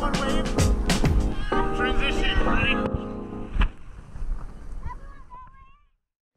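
Background music with a steady beat and singing, which breaks off about halfway through; a fainter wavering voice follows, and the sound fades to silence just before the end.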